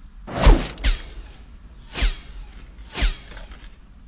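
Loud crunching of a bite into the crispy parmesan-crusted shell of a Pizza Hut Cheeseburger Melt, chewed close to the microphone: two crunches about half a second in, then one near 2 seconds and another near 3 seconds.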